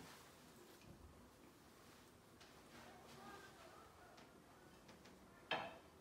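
Near-silent room with faint handling ticks, then one short clink about five and a half seconds in as a place setting of plate and bowl is set down on the table.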